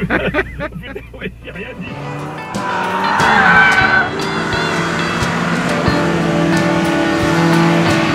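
Ford Sierra RS Cosworth's turbocharged four-cylinder engine running hard as the car slides sideways through a corner, its tyres squealing about three seconds in, with background music underneath. Voices in the car at the start.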